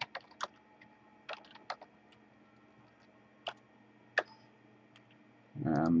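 A few scattered computer keyboard keystrokes and clicks, single taps and short pairs with pauses of a second or more between them, over a faint steady hum.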